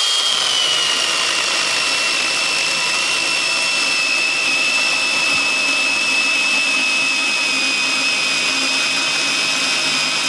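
Cordless AL-KO mini chainsaw running at full speed without cutting: a steady, high-pitched electric whine that drops slightly in pitch over the first couple of seconds, then holds.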